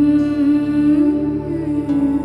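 Dramatic background score: a wordless humming voice holds one long note that lifts slightly about halfway through, over a steady sustained musical drone.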